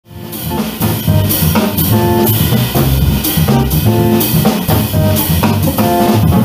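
Live jazz band playing with a steady beat: drum kit with regular cymbal strokes, kick and snare, under a walking double bass and electric guitar chords.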